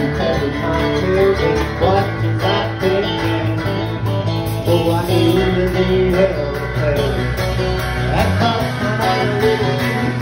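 Live country band playing: a drum kit keeping a steady beat under electric bass, strummed acoustic guitar and electric guitar.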